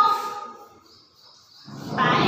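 A woman's voice trailing off on a drawn-out word, a pause of about a second, then talking again near the end.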